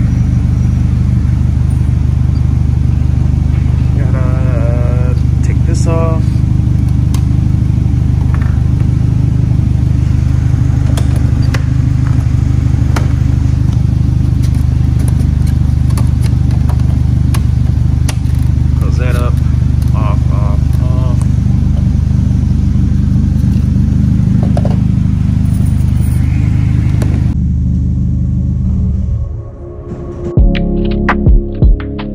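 Polaris Slingshot engine idling steadily, left running to recharge a weak battery after a hard start. The idle changes and fades near the end.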